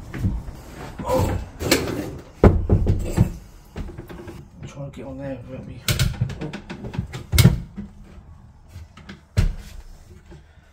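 Irregular wooden knocks, bumps and scrapes as an old wooden chair is moved into place and a ceiling loft hatch panel is pushed up and shifted aside, with several sharp knocks spread through.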